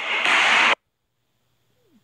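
Noise of an indoor basketball pickup game, a loud even hiss of play and voices that cuts off abruptly under a second in to near silence. A faint short falling tone sounds near the end.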